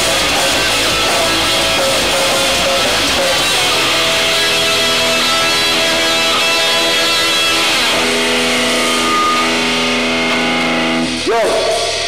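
Live band playing through amplifiers, with electric guitar and drums. About halfway through, the song settles into a long held chord that rings for several seconds and stops about a second before the end.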